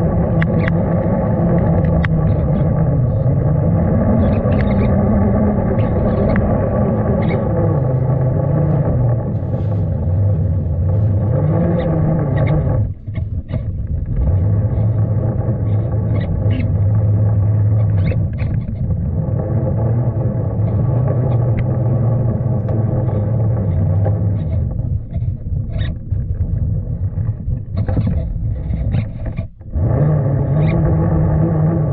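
RC crawler truck's electric motor and geared drivetrain whining under load, the pitch rising and falling with the throttle. It dips out briefly about 13 seconds in and again near the end, with scattered light ticks throughout.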